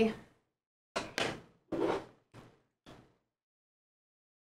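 A handful of short knocks and clacks from hair tools being handled, about five in two seconds, each dying away quickly.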